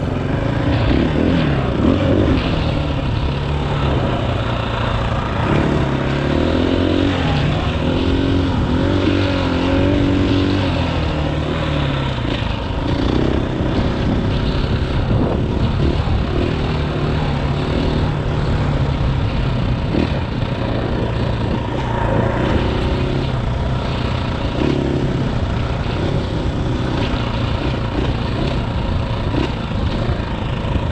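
2018 KTM 500 EXC-F's single-cylinder four-stroke engine running as the bike is ridden along a dirt trail, its pitch rising and falling with throttle and gear changes.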